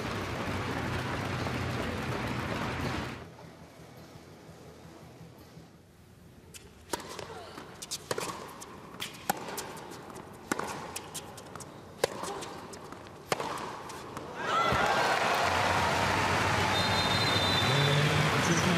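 A tennis rally: a string of sharp racquet-on-ball hits about a second and a half apart on a quiet court, followed near the end by the crowd suddenly breaking into loud cheering and applause as the break point is won.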